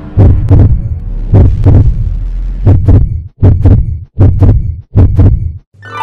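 A heartbeat sound effect: loud double thumps, about a second apart at first, then coming faster, stopping just before the end.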